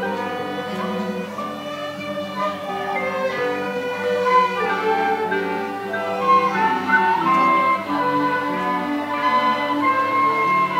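Student orchestra playing: violins and other bowed strings with cello and double bass, backed by wind instruments, in a flowing piece of held, changing notes.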